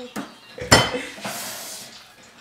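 Sharp knocks and a clatter of objects handled close to the microphone. The loudest knock comes about three-quarters of a second in, followed by a short hiss.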